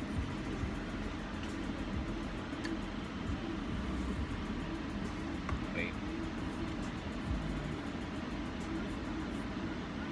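Steady low hum inside a car's cabin, from the car idling with its ventilation running.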